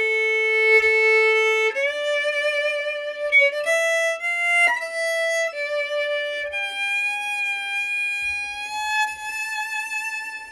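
Solo unaccompanied violin playing a slow klezmer melody, one line of long held notes: a long low note for the first couple of seconds, a few shorter notes stepping up with a quick slide, then a long higher note held through the second half.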